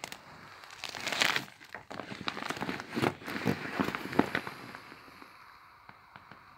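Vinyl inflatable air mattress crinkling and crackling as a hand squeezes and folds it to press the air out while it deflates. The sound comes in irregular bursts and fades off near the end.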